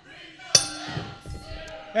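Wrestling ring bell struck about half a second in and left ringing, its tones fading slowly: the bell signalling the start of the match.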